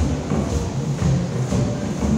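Live contra dance band playing a dance tune, with a steady rhythmic beat and the shuffle and thump of dancers' feet on a wooden floor.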